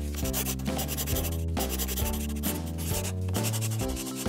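Felt-tip marker rubbing across paper in strokes as a drawing is outlined, over light background music with held notes.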